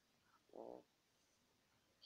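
Near silence, broken about half a second in by one brief, faint hum of a voice, a hesitant murmur between read-aloud words.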